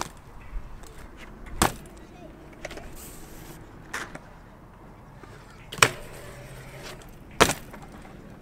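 BMX bike on a concrete skatepark: four sharp knocks as the wheels drop and land, the loudest about six seconds in, with quiet tyre rolling between them.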